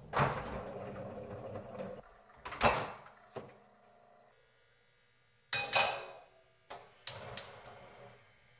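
Kitchen handling sounds: about half a dozen knocks and clunks of doors and cookware, the loudest about a third of the way in and again past the middle, some leaving a short metallic ring as a pan meets the gas hob.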